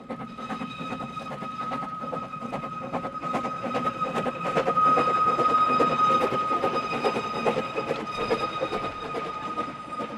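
Narrow-gauge Hunslet steam train passing: the locomotive and its coaches clatter by over the rails with a steady high-pitched squeal, loudest about five to six seconds in as the coaches go past, then fading.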